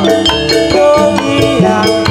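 Loud jathilan dance accompaniment: struck tuned percussion and drums playing a quick, steady beat.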